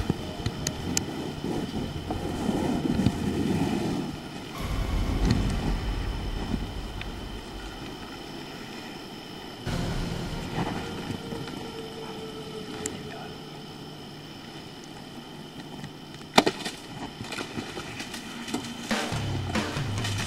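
Camcorder recording in quiet woods: a steady faint hiss, with stretches of low handling rumble on the microphone. One sharp snap about three quarters of the way through.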